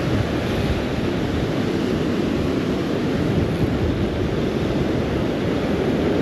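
Rough surf breaking steadily, with wind buffeting the microphone.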